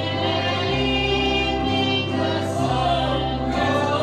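Gospel music: voices singing over instrumental accompaniment, with a held bass note that changes about once a second.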